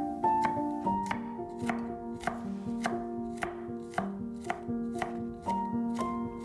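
A large chef's knife chopping garlic on a bamboo cutting board, the blade striking the board in a steady rhythm of about three chops a second as the slivers are minced. Background music with pitched, piano-like notes plays underneath.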